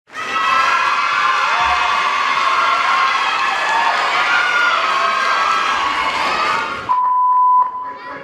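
Audience cheering and shouting in a sports hall. It cuts off abruptly about seven seconds in and gives way to a short, steady high tone.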